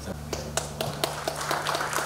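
A small seated audience clapping: a few scattered claps at first, growing into denser applause toward the end.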